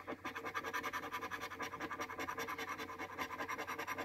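A metal scratcher coin scraping the coating off a paper lottery scratch ticket in rapid, even strokes, about ten a second.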